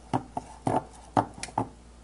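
A handful of irregular light clicks and taps from hands handling small metal connector parts and wire on a work table.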